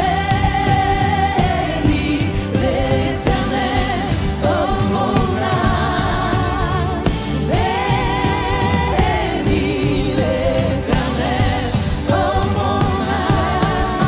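Live worship music: singers with a band, voices holding long notes with vibrato over a steady, full accompaniment.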